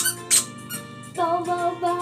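A yellow rubber duck toy squeaked twice in quick succession, with short, high-pitched squeaks, over a backing track of music. A held musical note comes in a little over a second later.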